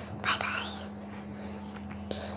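A short whispered word a little after the start, breathy with no voiced pitch, over a steady low electrical hum.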